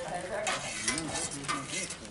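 Serving ladles and spoons scraping and clinking against large steel pots and plates as food is dished out, with a few sharp metallic clatters.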